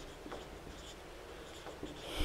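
Marker pen writing on a whiteboard: a string of faint, short strokes as a word is written.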